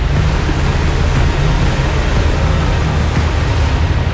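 Toyota Tacoma pickup driving through water: a steady rushing splash with the truck's engine underneath, mixed with a music track.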